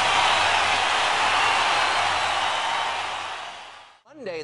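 Audience applause, a steady wash of clapping that fades out over the last second or so.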